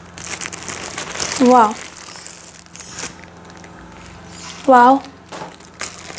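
Plastic wrapping crinkling and rustling as a wrapped tripod is handled and pulled from its carry bag, densest in the first half and quieter after. Two short voice sounds come in between.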